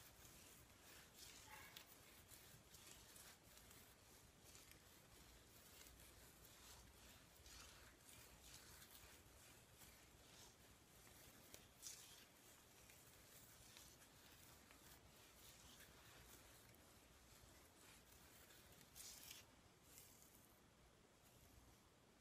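Near silence, with faint scattered rustles and soft crackles of fingers working styling gel through wet curly hair while finger detangling.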